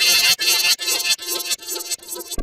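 Heavily digitally distorted, effects-processed logo audio stuttering in short repeated pulses, about five in two seconds, thin with no bass and fading toward the end.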